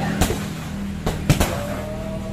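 Kicks landing on hanging heavy punching bags: four thuds, one just after the start and three in quick succession about a second in, over a steady low hum.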